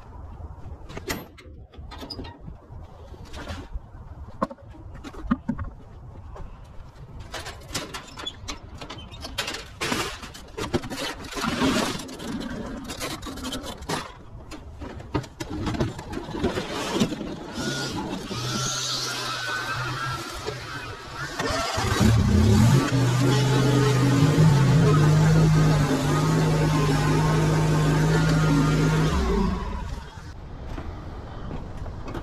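Scattered clicks and knocks of handling gear, then a motor running steadily. It is faint at first and turns loud and even about two-thirds of the way in, then cuts off abruptly shortly before the end.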